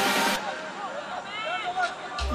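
A song cuts off abruptly in the first half second, leaving the match's own audio: a voice with a faint background of the field.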